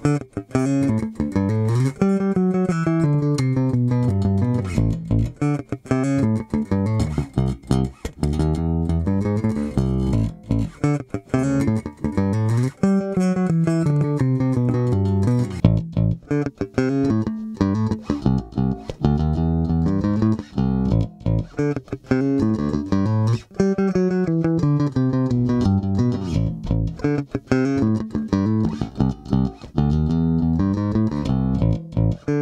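Sterling by Music Man Ray4 electric bass played with a pick, a repeating riff with the onboard preamp set flat. The first part is with the stock StingRay humbucker; partway through, it switches to a Nordstrand Big Blademan pickup wired in parallel.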